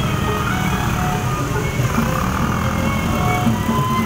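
Betawi ondel-ondel parade music with a melody of short held notes, over the steady rumble of motorbike engines passing close by.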